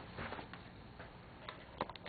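Faint, scattered clicks over low room noise.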